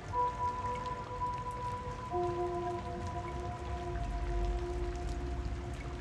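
Slow ambient music of long held notes, two sounding from the start and two lower ones joining about two seconds in, over a steady rain-like patter.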